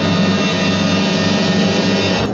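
Orchestral 1960s TV-drama score holding one loud, sustained chord, with a fast rolling tremor underneath.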